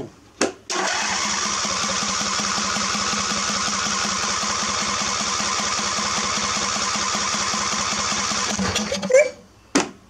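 Electric starter cranking a Briggs & Stratton 24 hp V-twin mower engine for about eight seconds at an even, steady rate, then stopping. It is a fuel-pump test with the fuel line feeding a bottle, and the pump sends no fuel: the owner suspects a bad fuel pump.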